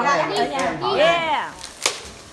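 Excited voices, some high-pitched like children's, calling out in drawn-out notes that rise and fall in pitch. A single sharp click comes near the end.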